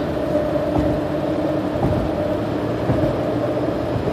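Steady road noise heard from inside a moving car: tyre and wind noise with an even hum, no changes in speed.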